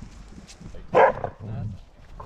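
A Border Collie barks once, loud and very close, about a second in, followed by a short, lower sound from the dog.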